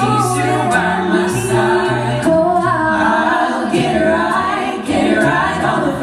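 A mixed-voice a cappella group singing, with sustained vocal harmonies over a sung bass line and no clear lyric words, plus a few short, sharp hissing hits.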